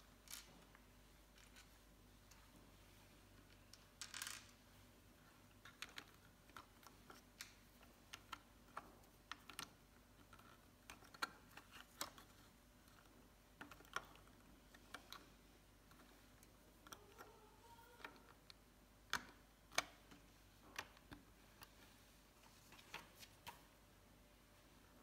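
Small plastic LEGO bricks clicking and tapping as they are pressed together onto a build and picked from loose parts on a table: irregular sharp clicks, with a brief scrape about four seconds in.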